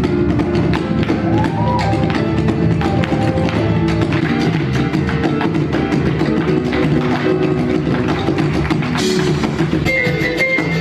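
Live Latin-style stage music, keyboard and drums with a quick percussive beat, with dancers' boots stamping on the stage floor.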